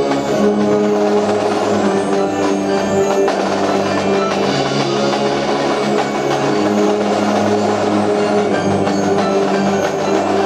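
Marching band playing: the brass section holds sustained chords while the drum line of snares, tenors and bass drums plays under them.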